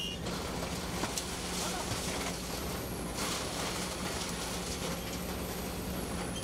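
Hydraulic excavator's diesel engine running steadily under load as its bucket pushes down a brick wall, with a few short bursts of falling brick and debris.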